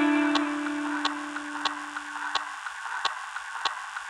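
An electric guitar's last note rings on and fades away over about two and a half seconds, leaving a steady hiss with a regular soft tick about three times every two seconds.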